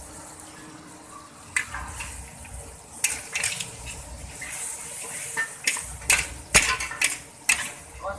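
Metal spatula scraping and clanking against a wok as instant noodles are stir-fried in their sauce, over a steady hiss of sizzling. The scrapes start about a second and a half in and come thickest near the end.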